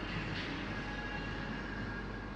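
Coffee shop ambience: a steady wash of room noise with a thin, high steady tone held over it.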